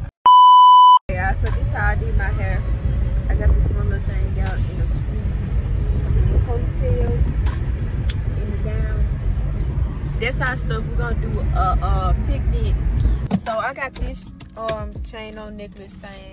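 A loud, steady, high bleep tone about a second long is cut into the audio near the start. It is followed by a song with singing and a quick steady beat over the low rumble of road noise inside a moving car. The rumble drops away near the end.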